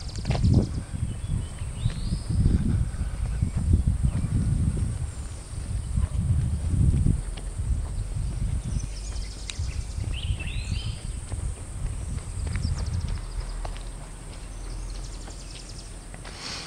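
Footsteps on a driveway with low rumble from the handheld camera as it is carried along, over a steady high insect buzz.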